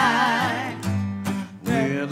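Gospel song: a sung note held with vibrato fades out early on, then guitar notes and strums fill the gap between vocal lines.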